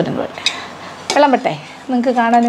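A metal spoon clinking against a stainless steel serving bowl, about three light knocks in the first second. A woman's short vocal sound follows just after the last clink.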